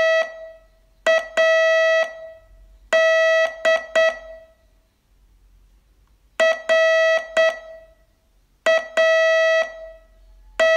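Morse code practice tone, a buzzy beep near 650 Hz keyed in short dots and longer dashes, sent slowly with wide gaps between letters. There is a pause of about two seconds a little before halfway.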